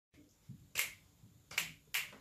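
Two people snapping their fingers in time: three sharp, separate snaps, the last two closer together, counting in before the acoustic guitar starts.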